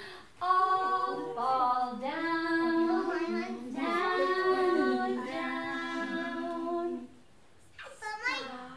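Adults and young children singing a children's song together, unaccompanied, with held notes. The singing stops about a second before the end.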